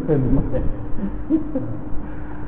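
An elderly Buddhist monk's voice speaking Thai in a sermon, in short, drawn-out, gliding syllables, over a steady low hum.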